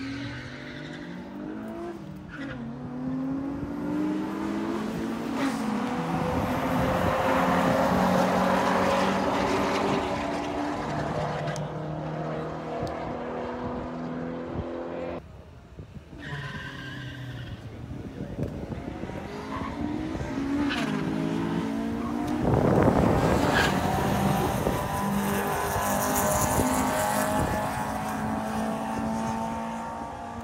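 Street cars at a drag strip launching and accelerating hard, engines revving up in pitch and dropping back at each gear change. The sound breaks off abruptly about halfway through and another run's engines climb through their gears again, with a loud rush of noise a little after two-thirds of the way.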